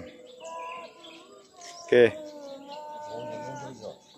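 Birds chirping and calling, a mix of short high chirps and longer held calls.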